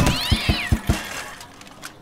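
Cartoon sound effects: a short squeal that rises then falls, with a quick run of about five thuds from bouncing tyres, getting quieter and dying away within the first second.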